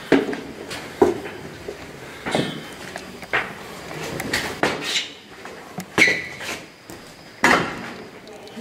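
A string of sharp knocks and clatters, irregular but about one a second. Some are followed by a brief ring.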